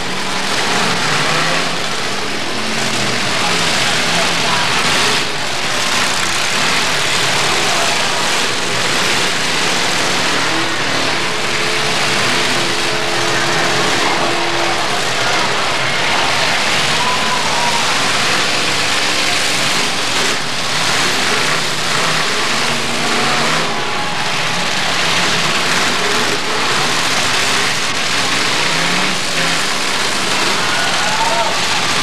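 Demolition derby cars' engines running and revving, overlapping one another, under a steady wash of crowd noise and background voices.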